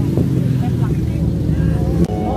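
A motor vehicle engine running close by: a steady low hum, with faint voices behind it.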